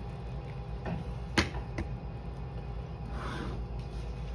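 Plastic vitamin bottle and cup being handled and set down on a wooden table: one sharp click about a second and a half in, a softer click just after, and a brief rustle near the end, over a steady low hum.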